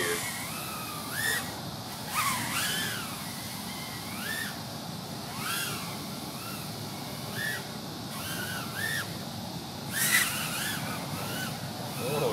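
Brushless motors and propellers of a 100 mm mini racing quadcopter in flight, giving a whine that swings up and down in pitch again and again with the throttle, with a few brief rushing swells of air noise as it passes.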